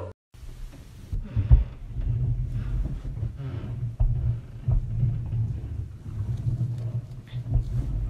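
Noise from the upstairs flat coming through a thin ceiling: a heavy, muffled low rumble with several dull thumps, the clearest about a second and a half in and again around four seconds.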